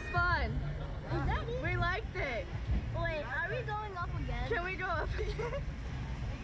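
High young voices laughing and chattering in short bursts, over a steady low rumble.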